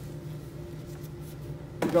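Room tone with a steady low hum, as from ventilation or electrical equipment; a man's voice begins near the end.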